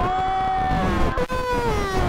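A long drawn-out shout of "gol", held for about two seconds and slowly falling in pitch, over crowd cheering and shouts, for a penalty that has gone in.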